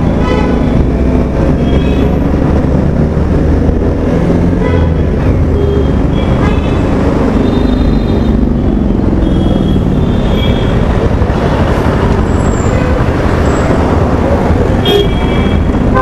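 Motorcycle riding in dense city traffic: a steady, loud engine and road rumble, with short horn toots from the surrounding vehicles several times along the way.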